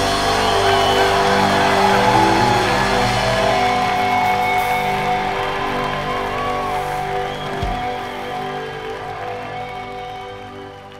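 A live rock band's last chord, held and ringing out on electric guitar, with a crowd applauding and cheering over it. A single low thump comes about three-quarters of the way through, and the whole sound fades away toward the end.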